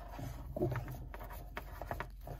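Faint rustling and soft scraping of braided rope cord being pulled through a knot by hand.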